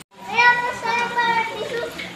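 A child's high voice calling out in one long, steady note lasting about a second and a half, starting just after a split-second dropout.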